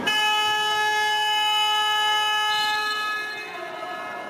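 A horn sounding one steady, loud note for about three seconds, cutting in suddenly and fading out near the end; it stops play in the futsal match.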